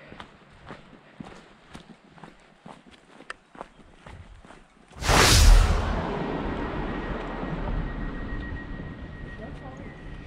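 Footsteps on a dirt forest trail: a run of soft steps, about two to three a second. About five seconds in, a sudden loud rush of noise cuts in and slowly fades to a steady hiss.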